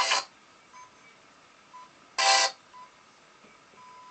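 The FM radio of a Bang & Olufsen Beosound 9000 cuts off at the start and stays almost silent, apart from a few faint short tones and one brief burst of station sound a little past two seconds in.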